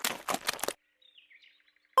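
Faint bird chirps, as background birdsong, with a short noisy rustling burst lasting under a second at the start.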